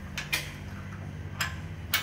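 A few light metal clicks and clinks, four in all and spread out, as a steel dozer-blade insert is handled and fitted into its slot on a Kubota BX2763A snow blade.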